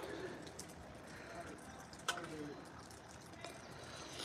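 Faint cooing of a dove, two soft falling calls: one at the start and one about two seconds in, with a light click just before the second.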